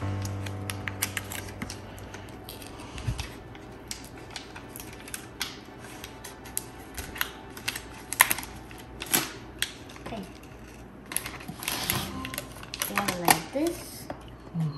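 Paper label stickers being handled and peeled from their backing sheets: a run of small, irregular crinkles and crackles of paper.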